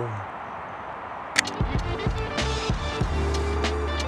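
A single sharp click about a second and a half in, the Leica M6 film camera's shutter firing at the end of a countdown. Right after it, background music with a deep bass and a regular beat starts.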